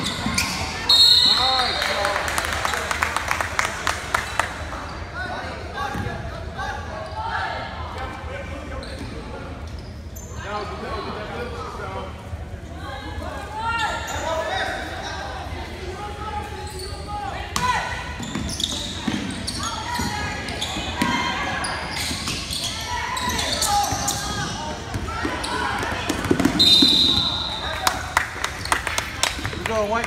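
Basketball game in a gym: a ball bouncing on the hardwood court amid indistinct shouting from players and spectators, with a referee's whistle blown briefly about a second in and again near the end.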